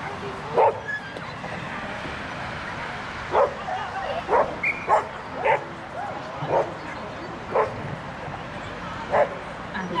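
A dog barking in short, sharp barks, about eight of them spread unevenly, bunched closest together in the middle.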